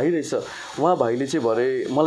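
A man's voice speaking in conversation, with a brief pause about half a second in.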